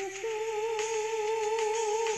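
A karaoke singer holding one long sung note with a slight waver, stepping up a little in pitch shortly after the start, over a backing track.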